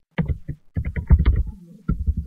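Fast, heavy typing on a laptop keyboard, heard as a quick run of low thumps with a short pause near the middle.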